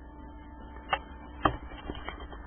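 Handling noise from a handheld camera being turned around: two short knocks about half a second apart and a few light ticks, over a faint steady hum.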